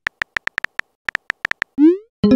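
Phone keyboard typing sound effect from a texting app: about a dozen quick, crisp taps, followed near the end by a short rising swoop.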